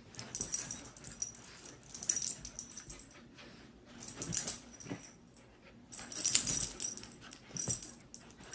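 Puppies wrestling on a blanket-covered bed, vocalising as they play, with irregular bursts of scuffling and rustling as they tumble.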